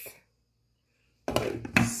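About a second of dead silence, as at an edit cut, then a sudden knock of handling noise and the start of a woman's speech near the end.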